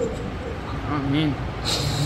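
A man's voice leading a spoken prayer, in short low phrases, with a brief hiss near the end.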